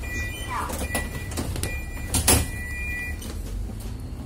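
Medium-size city bus standing with its engine idling in a steady low drone, while a high electronic tone sounds on and off. A short falling squeak comes just under a second in and a loud sharp clunk a little after two seconds in.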